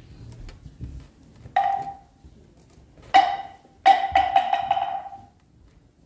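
Moktak (Korean Buddhist wooden fish) struck twice, then in a quick roll of about six strikes near the end; each stroke is a hollow wooden knock with a short ring.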